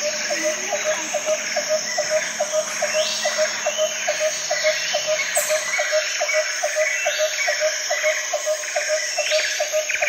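End-credits background music with a steady ticking beat, about four ticks a second.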